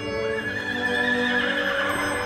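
A horse whinnying in one long, wavering call over a soft music score.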